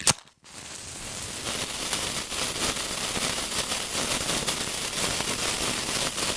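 Sound effect of a lit bomb fuse: a sharp snap at the start, then a steady crackling fizz of the burning fuse.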